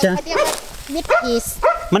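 Brief rustle of a hand scooping loose coconut-coir growing substrate, about half a second in, followed by a few short high-pitched voice sounds.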